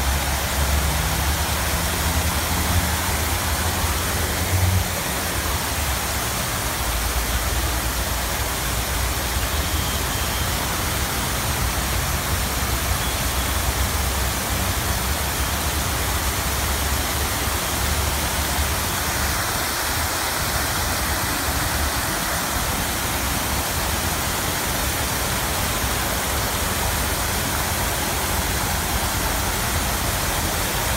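Many fountain jets spraying and falling back into the basin: a steady rush of splashing water, with a low rumble that comes and goes in the first half.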